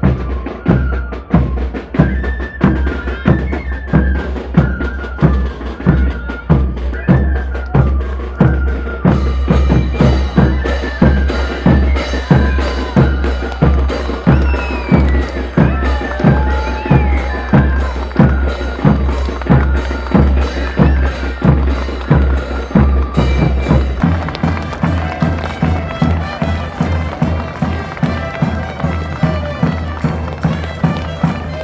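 Andean festival dance music: a steady drum beat under a reedy wind-instrument melody. The sound changes abruptly about nine seconds in and again near the 24-second mark.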